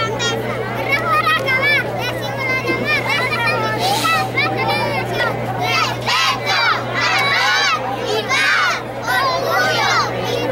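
A group of young children's voices raised together in chorus, many voices overlapping, with a steady low hum underneath.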